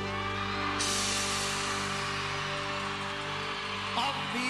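Live pop band music held on one long sustained chord at the close of a song. A steady wash of high noise joins about a second in.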